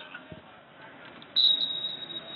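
Referee's whistle, one sharp high blast about one and a half seconds in, its tone trailing on faintly past the end: the signal to restart wrestling.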